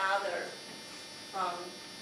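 A few words of speech over a steady electrical hum and high buzz that runs under the voice without a break.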